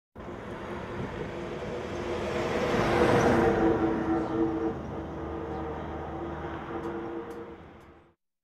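A passing vehicle: a rumble with a steady hum that swells to its loudest about three seconds in, then slowly fades out.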